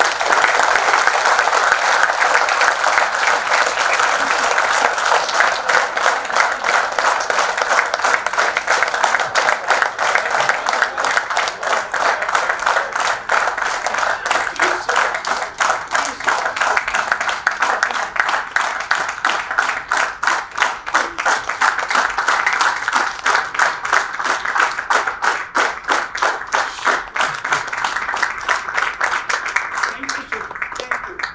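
Audience applauding steadily, thinning slightly near the end.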